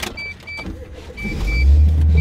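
Car's electronic warning chime sounding in pairs of short high beeps, while a low engine rumble comes in about a second in and grows loud as the car's engine starts.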